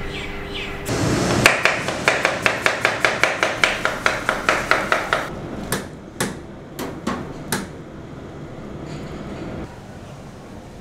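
A quick run of sharp, evenly spaced knocks, about four a second, for some four seconds, then a handful of slower separate knocks before it quietens.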